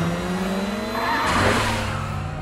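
Sound effect of two Mazda RX-7 FD sports cars racing side by side, one twin-turbo, one single-turbo, engines rising in pitch under hard acceleration. Partway through there is a burst of tyre noise, and the engine note then settles.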